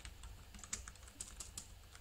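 Computer keyboard being typed on: faint, irregular keystrokes as a word is entered letter by letter.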